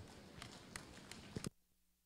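Faint, scattered applause from a crowd, a few sharp individual claps over a haze, cutting off suddenly about a second and a half in.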